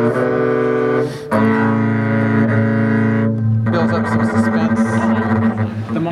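Upright double bass bowed in chords: several strings sounding together in three sustained bowed chords, one ending about a second in, the next held to about three and a half seconds, the last to near the end.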